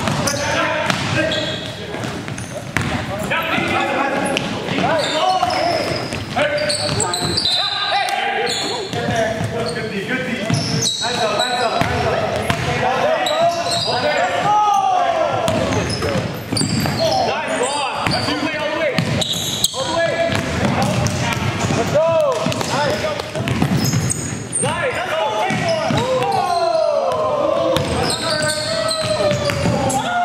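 Indoor basketball game sounds on a gym floor: a ball bouncing on hardwood, frequent short high squeaks of sneakers, and players shouting, all reverberating in the gymnasium.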